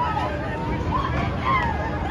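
Riders on a spinning fairground thrill ride yelling, with several voices overlapping and rising and falling in pitch, over a steady low rumble.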